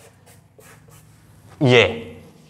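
Faint, evenly spaced writing strokes on a board, about three a second, as written numbers are being erased; a man's voice says one word near the end.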